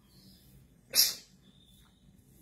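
A single short, sharp breath noise from a person about a second in, against faint room tone.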